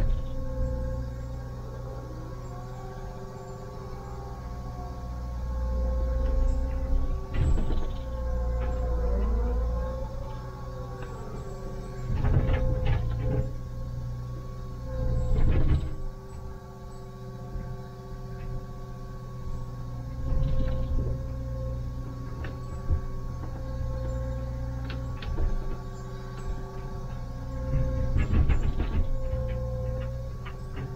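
Liebherr 904 wheeled excavator heard from inside the cab: diesel engine running under a steady hydraulic whine that bends in pitch and swells as the boom and bucket move. Several sharp knocks and scrapes of the steel bucket on rock come through.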